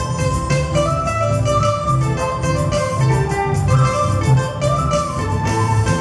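Andean huayno played live on acoustic guitar, electric guitar and electric bass: a guitar melody over a moving bass line, with no singing.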